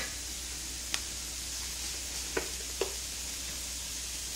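Dried anchovies in a sticky soy and rice-syrup (jocheong) glaze sizzling steadily in a frying pan over gentle heat. There are a few light clicks of a wooden spoon stirring against the pan.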